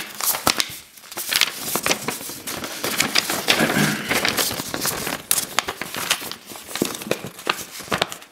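A folded paper letter being handled and unfolded, rustling and crinkling in a dense run of small crackles.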